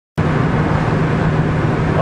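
Diesel van driving at road speed, heard from inside the cab: a steady engine drone with road and tyre noise.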